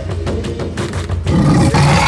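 Background music, then about a second and a half in a loud, rough snarl from a lioness that runs on to the end.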